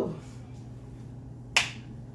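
Quiet room tone with a steady low hum, then a single sharp hand clap about one and a half seconds in.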